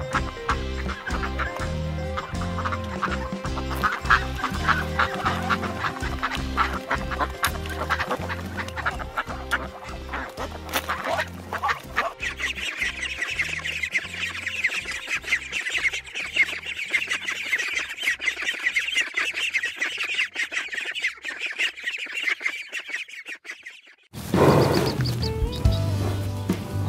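Ducks calling over background music with a steady beat, then from about twelve seconds in a dense, continuous honking chorus from a flock of Egyptian geese as the music fades out. Near the end the sound cuts abruptly to a new low animal call.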